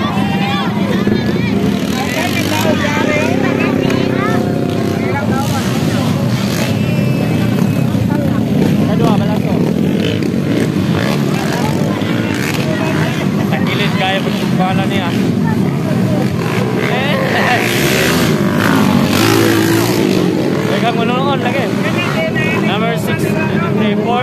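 Small underbone racing motorcycles running on a dirt motocross track, their engines revving up and down, mixed with the constant voices of a crowd of spectators.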